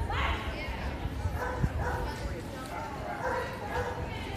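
A dog barking in short, sharp yips, the sharpest right at the start.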